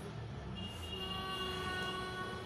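Background music with sustained, held notes at a steady level.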